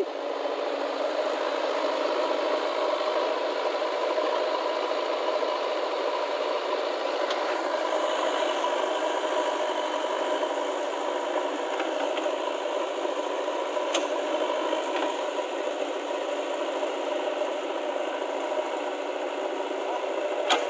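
JCB 3DX backhoe loader's diesel engine running steadily under load with a rattle as the front loader bucket pushes soil.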